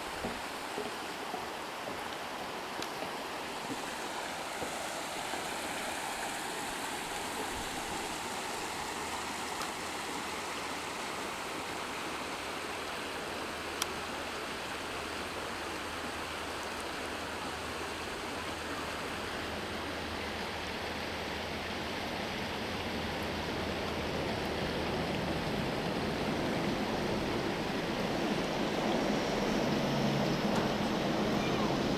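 Shallow river running over rocks and stones, a steady rushing of water that grows louder toward the end.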